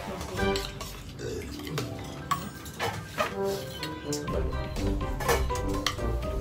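Spoons clinking against bowls and pots at a meal, several separate clinks, over background music.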